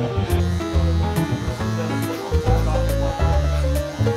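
Background music: a track with plucked guitar over a bass line and a steady beat.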